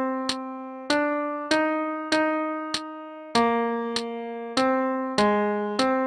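Piano-like keyboard sound playing the sax line as a single melody, one note at a time, each note struck and then fading. A metronome click ticks steadily under it, about every 0.6 seconds.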